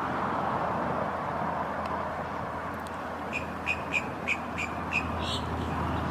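A bird giving a quick run of about six short, high chirps, starting about three seconds in, over a steady rushing background.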